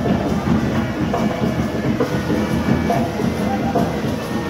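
Procession music with drums, playing continuously at a steady level.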